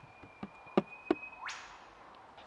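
Three sharp knocks on a painted wooden door, about a third of a second apart. Near the end a rising hiss follows.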